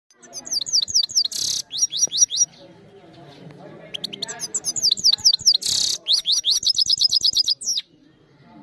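Goldfinch singing: two bursts of rapid, high twittering notes, each with a short harsh buzzy note, separated by a brief pause. The second burst ends in a fast trill of about ten notes a second before stopping just before the end.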